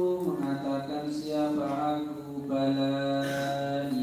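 A man's voice chanting a melodic religious recitation into a microphone, in long held notes that step slowly down in pitch.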